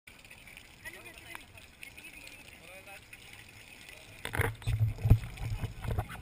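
Faint voices at first, then from about four seconds in a loud stretch of deep rumbling and several sharp knocks, the loudest a second later: close handling noise on the camera as the rider gets into place on the water slide.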